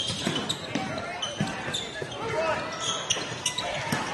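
Live basketball game sound in a gym: the ball bouncing on the hardwood floor several times and sneakers giving short squeaks, over crowd chatter.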